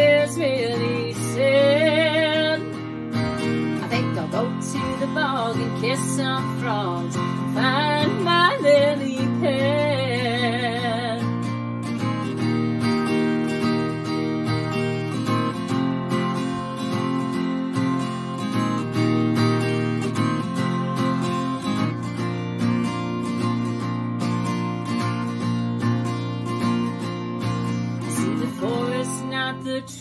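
Acoustic guitar strumming chords, with a woman's wordless sung notes, wavering with vibrato, over roughly the first ten seconds; after that the guitar plays on alone as an instrumental break.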